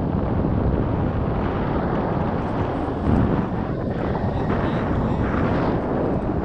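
Wind rushing over the camera microphone of a tandem paraglider in flight: a steady, loud, low noise with no pitch.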